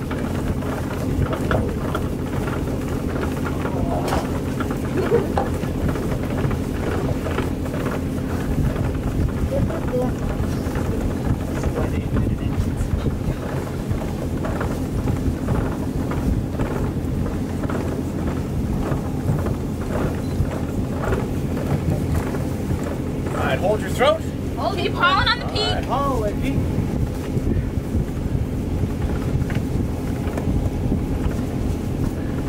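Wind on the microphone over a low, steady engine drone, with faint crew voices. About 24 seconds in, a brief wavering high-pitched sound rises and falls.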